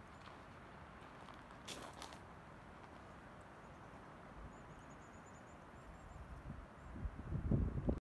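Faint outdoor morning ambience with thin, distant bird calls, a brief rustle about two seconds in, and irregular low thumps and rumbling on the microphone that build in the last two seconds and are the loudest part.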